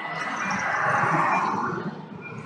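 A Range Rover SUV overtaking the electric scooter close by, its tyre and road noise swelling and then fading within two seconds.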